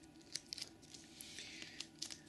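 Faint handling sounds of scissors and a strip of duct tape: a few light clicks and a soft rustle, with no clear cutting stroke.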